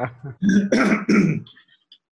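A man clearing his throat: a few rough rasps in quick succession over about a second.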